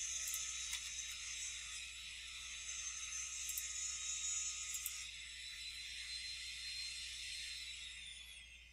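Low, steady hiss with a faint high whine: the noise floor of a desktop recording microphone, with a few faint mouse clicks during CAD trimming.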